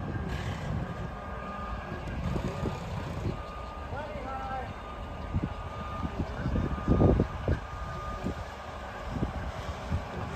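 Heavy diesel equipment running with a low rumble as a modular home section is craned up, while a backup alarm beeps repeatedly. A few low thumps come about seven seconds in.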